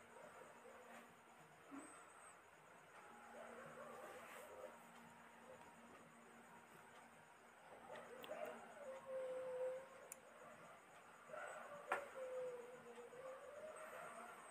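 Near silence: faint room tone, with a few faint wavering tones in the middle and near the end and a single soft click near the end.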